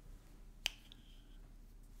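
Quiet room tone with a faint low hum, broken by a single sharp click about two-thirds of a second in.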